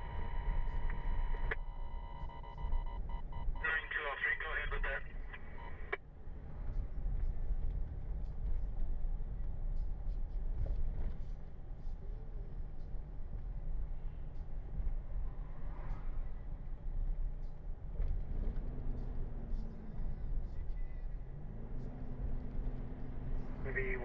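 A dispatch radio's steady tone for the first second or so, then a short garbled radio transmission. After that comes the low, steady road and engine rumble of a car's cabin while driving, until radio speech returns at the very end.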